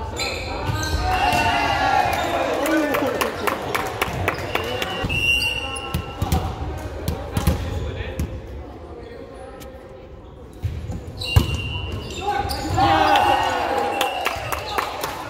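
Volleyball play in an echoing gymnasium: players shouting calls and the sharp slaps of hands hitting the ball. The play goes quieter for a couple of seconds, then comes one loud hit, followed by more shouting near the end.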